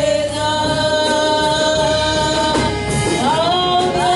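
Live gospel worship music: a woman's voice holds one long sung note over the band, then slides down and rises into the next note near the three-second mark.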